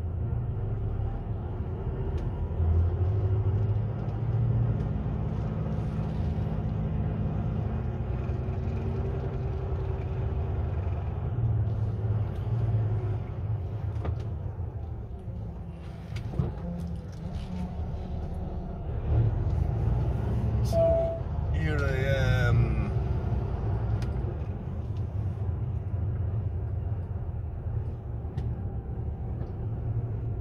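Lorry engine running, heard from inside the cab, as the truck moves slowly through a yard: a steady low drone that rises and falls with the throttle. About 21 seconds in there is a short rising whine.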